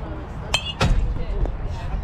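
A pitched baseball popping into the catcher's mitt just under a second in, the loudest sound, preceded by a short ringing metallic clink. Faint voices in the background.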